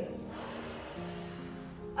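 A person's long breath out during the first second, breathed out while going down into a squat, over soft background music with a few steady held notes.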